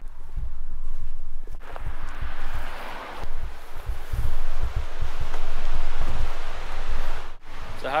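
Footsteps and rustling through grass and over rocks while a canoe is carried overturned on the shoulders, with irregular low buffeting of wind on the microphone.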